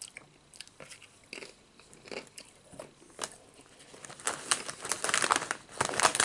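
Close-miked crunching of Nacho Cheese Doritos tortilla chips being bitten and chewed, a string of sharp crisp cracks. Near the end comes a louder, denser stretch of crackling as the plastic chip bag is rustled.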